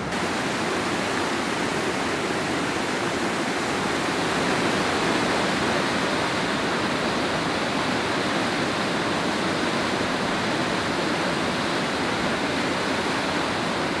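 Waterfall pouring over a rock ledge: a steady, unbroken rush of falling water.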